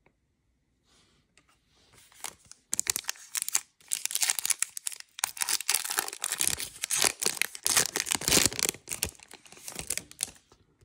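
Foil wrapper of a Panini Prizm football card pack being torn open and crinkled by hand. A few faint rustles come first, then about seven seconds of dense crackling as the foil is ripped and pulled apart.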